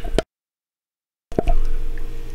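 Low rumbling knocks and clicks of hands handling a cordless drill on a workbench, cut off by about a second of dead silence where the audio drops out, then resuming.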